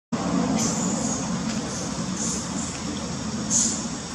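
Outdoor background noise: a steady low rumble with a few short, high-pitched chirps, the loudest near the end.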